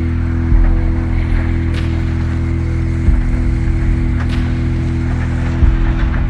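Tracked excavator's diesel engine running at a steady pitch, with two sharp knocks about two and a half seconds apart.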